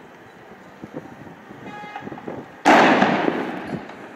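A single loud bang about two-thirds of the way in, cutting in suddenly and fading away over about a second.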